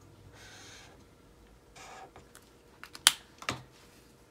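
Pens being handled at a desk: soft scratching of a highlighter on paper, then a few small clicks and a sharp plastic click about three seconds in, with another half a second later, as pen caps are pulled off and snapped on.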